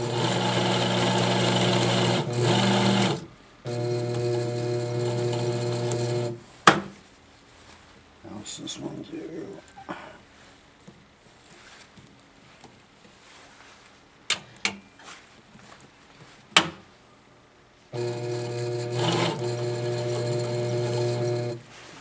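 Shuttle-type toroid winding machine's motor running in three short steady-pitched runs, two of about three seconds near the start and one of about four seconds near the end. In between come sharp clicks and small handling noises.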